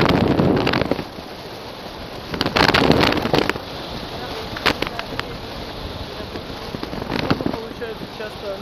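Airflow buffeting an action camera's microphone in paraglider flight: a steady rushing with two loud gusts, one in the first second and one from about two and a half to three and a half seconds in, plus a few sharp crackles.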